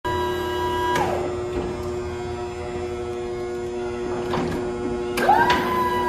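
Electric floor jack's motor running with a steady whine over a hum. About a second in it clicks and the whine drops away in pitch. Near the end, after a couple of clicks, it climbs back up and holds.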